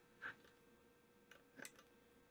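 Near silence: room tone with a faint steady hum and two faint clicks, one about a quarter second in and one near the end, as a test lead's plug is moved to another terminal on a resistance box.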